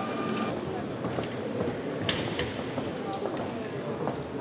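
Indistinct background voices and room murmur, with a few light clicks.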